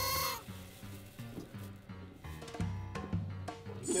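A pushed game button's electronic sound effect cuts off about half a second in. After it, quiet background music with a low, steady beat.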